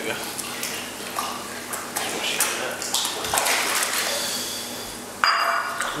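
A crowd of koi splashing at the water surface of a tank as they feed on pieces of frozen mussel, in irregular splashes. The sound gets suddenly louder about five seconds in.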